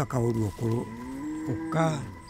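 A man speaking in a language other than English, in short phrases with rising and falling pitch, over soft background music.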